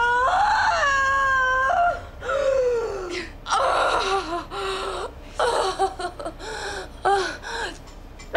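A woman in labour crying out as she pushes: a long, high, strained cry for the first two seconds, then a falling cry and a rough straining breath, ending in a string of short falling whimpers and gasps.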